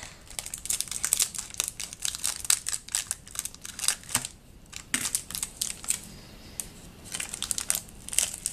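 Foil wrapper of a small Oreo biscuit packet crinkling in the hands while it is snipped open with scissors: a dense run of sharp crackles broken by two short lulls.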